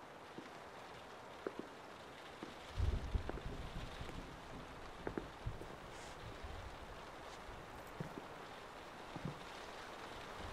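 Faint, steady rain falling on a window, with a few light ticks and a brief low rumble about three seconds in.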